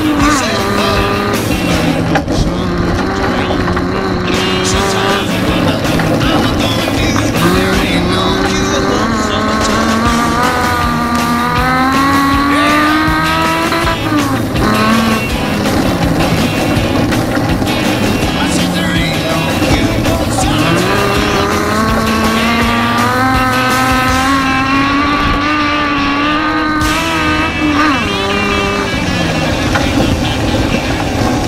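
Autocross race car engine heard from inside the cabin, its pitch climbing and dropping back several times as the car accelerates and slows through the course.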